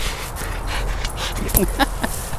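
Dog panting with a deflated old basketball gripped in its mouth, with a couple of short high squeaks near the end.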